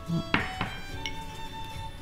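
Soft background music with two short clinks of a spoon against a small ceramic bowl near the start.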